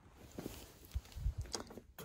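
A few faint low thumps and soft knocks: handling noise from a camera being moved by hand.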